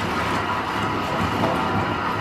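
Bathtub tap running, water pouring steadily into the tub as it fills.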